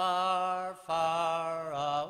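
Unaccompanied male voice singing a slow traditional Irish song, holding two long notes with a short break between them, the second sliding down near the end.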